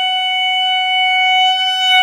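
Solo saxophone holding one long, steady high note.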